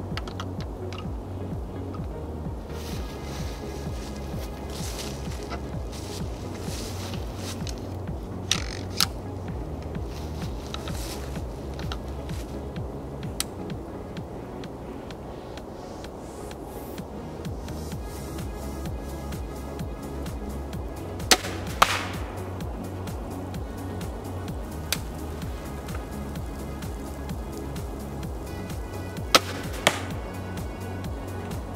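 Background music with a steady beat. Over it come a few short, sharp snaps of a TenPoint crossbow being shot, some followed a split second later by the arrow striking the target; the loudest pair comes about two-thirds of the way through.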